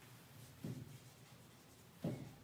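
Faint marker writing on a whiteboard.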